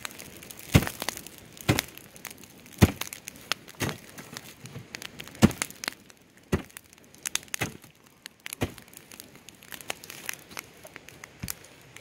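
Burning wood and charcoal in a steel oil-drum biochar kiln being tamped down with a flat metal blade on a wooden pole: crunching strikes about once a second, with smaller crackles from the fire between them.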